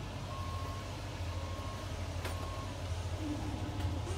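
Shuttle bus reversing alarm beeping three times, about a second apart, over the low, steady rumble of the bus engine, heard from inside the cabin.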